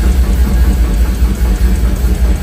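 Live deathcore band playing loud and heavy: down-tuned distorted guitars and drums merge into a dense, fast-pulsing low rumble.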